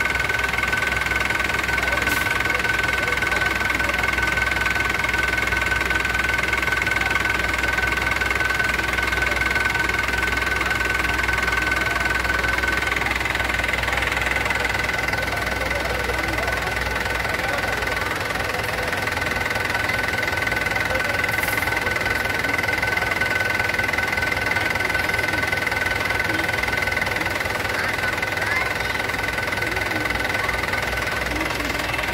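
Mahindra 475 DI tractor's four-cylinder diesel engine idling steadily, with a steady high whine running over it.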